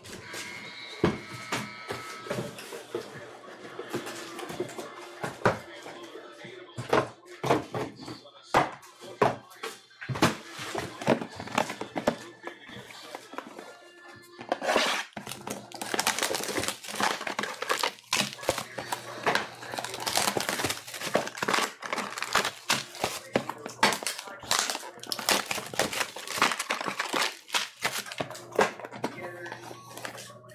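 Shrink-wrapped cardboard trading-card hobby boxes handled and opened: dense, irregular crinkling and rustling of plastic wrap and cardboard with light knocks, busier in the second half, over background music.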